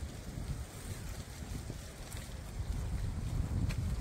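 Wind buffeting the microphone: an uneven, gusty low rumble. A couple of faint clicks sound near the end.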